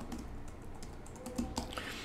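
Computer keyboard typing: a quick run of soft keystrokes as a web address is typed and entered.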